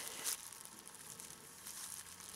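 Brief faint crinkle of plastic bubble wrap being handled, dying away within the first half second into a low, steady hiss.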